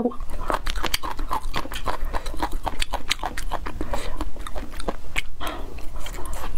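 Close-miked chewing of a spicy mixed dish: a dense, irregular run of wet crunching and smacking mouth sounds, several a second.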